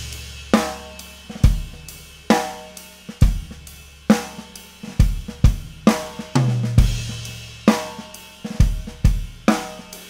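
An unmuffled Pearl Masters Custom maple drum kit played in a slow groove of bass drum, snare and hi-hat, with the drums ringing wide open with lots of overtones. A tom rings out from a fill as it begins, and another tom stroke rings a little past six seconds in.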